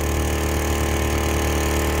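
An engine running steadily at idle: a low, even hum that does not change.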